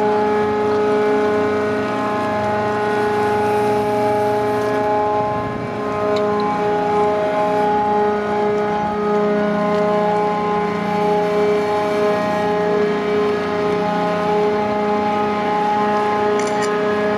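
Grab dredger's crane machinery running steadily while the grab bucket is held aloft, a constant drone with a fixed-pitch whine over it.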